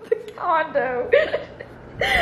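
A high-pitched voice making wordless sounds in two short phrases, its pitch sliding up and down.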